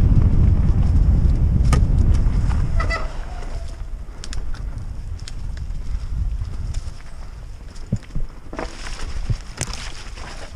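Norco Aurum downhill mountain bike descending a dirt forest trail, with loud wind buffeting the microphone for the first three seconds. After that come tyres rolling over dirt and leaves and the bike's sharp rattles and clicks, with a brief squeal about three seconds in. Near the end there is a brighter rush, with clicks.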